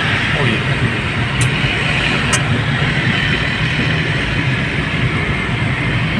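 Steady engine and road noise heard from inside a moving car's cabin. Two brief clicks come in the first half.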